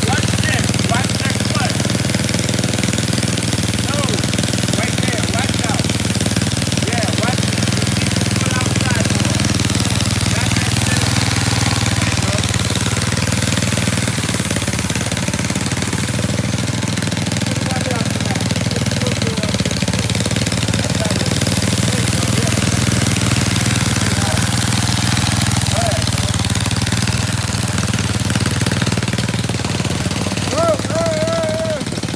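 Small gasoline engines of custom-built motorized chopper bicycles running steadily close to the microphone, in an even, unbroken drone.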